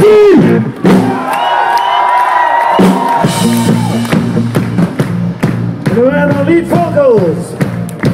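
A live rock band playing loud through a PA, with drums, electric guitar and a voice over them. A long held note rings from about one to three seconds in.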